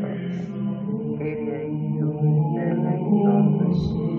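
Music track of low-pitched chanting voices holding long notes that shift in pitch every second or so.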